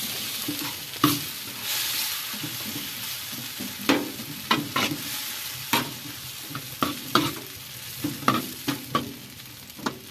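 Chicken pieces sizzling in a large black pan on a wood stove, a steady frying hiss. Through it, a utensil scrapes and knocks against the pan about a dozen times as the pieces are stirred and turned.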